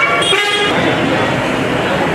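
A vehicle horn honks briefly in the first half-second, over the steady hubbub of a busy bus stand with people talking.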